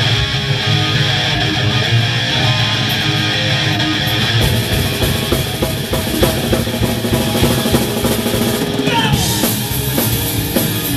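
Live heavy rock band playing the opening of a song: distorted electric guitars, bass and drum kit. The sound gets fuller and brighter about four and a half seconds in.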